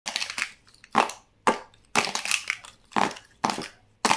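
Plastic felt-tip markers clacking and rattling against one another as they are gathered up by hand, in about six separate clatters roughly half a second apart.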